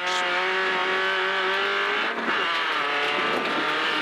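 Renault Clio 1600 rally car's engine, heard from inside the cabin, pulling hard at high revs with its pitch rising. About two seconds in there is a quick upshift: the note drops, then climbs again under full acceleration.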